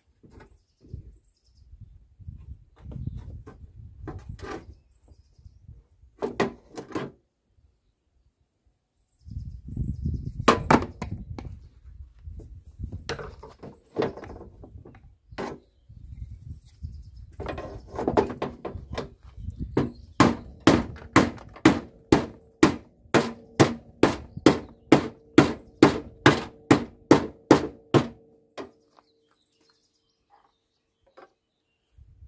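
Dent work on a Volvo V70's front wing: scattered knocks and rumbling noise from metal being levered, then in the last third a steady run of about seventeen sharp metal strikes, roughly two a second, each leaving a short metallic ring.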